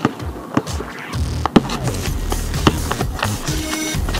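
Background music with a steady beat, over which a basketball bounces on asphalt: four or five sharp thuds at uneven intervals.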